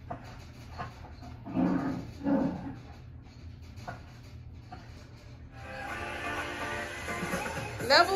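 Soundtrack of a children's freeze-dance game playing from a TV: a held pause with two short low voice-like sounds about two seconds in, then music fading in and building from about five and a half seconds, leading into the level-complete cue.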